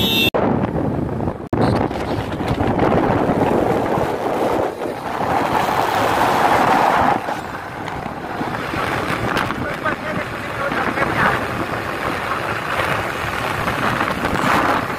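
Wind rushing over the microphone of a camera on a fast-moving vehicle, mixed with road and traffic noise on the highway. It briefly cuts out twice near the start and swells louder for a couple of seconds around the middle.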